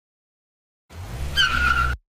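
Sound effect of a car braking hard: engine rumble with a high tyre screech, starting about a second in and cutting off suddenly as it stops.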